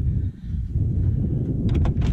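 Wind buffeting the microphone in a low rumble, with a couple of sharp clicks near the end as a hand takes hold of a fire engine's cab door handle.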